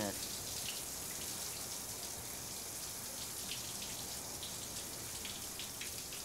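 Shower running: a steady hiss of falling spray, with a few faint splashes.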